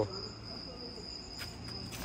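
A steady high-pitched whine, like a cricket's continuous trill, over a low hum, with a couple of faint ticks in the second half.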